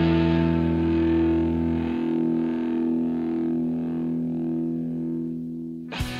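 A distorted electric guitar chord held and ringing out at the end of an Oi/streetpunk song, slowly fading; the lowest bass note drops out about two seconds in, and the chord has nearly died away by the end.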